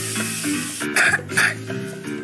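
Aerosol disinfectant spray hissing over soft background music, then two short, sharp noises about a second in.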